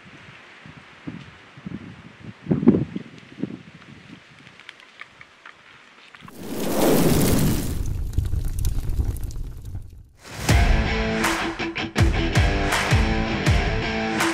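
A compound bow dry-fired: one sudden loud snap about two and a half seconds in as the string breaks with no arrow nocked. Then a loud whoosh and boom, and from about ten seconds in, rock music with guitar.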